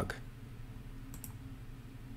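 Two faint computer keyboard key clicks about a second in, over a low steady hum.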